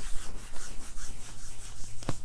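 Hands rubbing briskly over the back of a sweatshirt in a quick run of scratchy fabric strokes.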